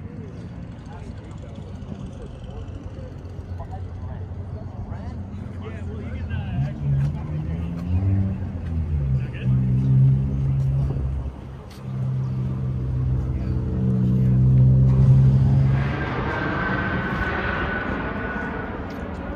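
People talking in the background, a low-pitched voice or hum most prominent in the middle. A rushing noise with a faint, slightly falling whine builds near the end.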